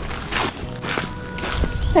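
Footsteps crunching on gravel, about two steps a second, over faint background music with held notes.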